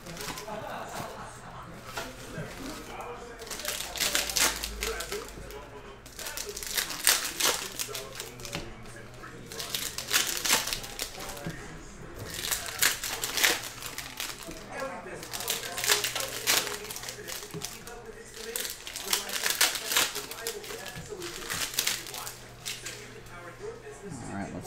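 Plastic wrappers of trading-card packs crinkling and tearing as the packs are opened, in bursts every two to three seconds, over a steady low hum.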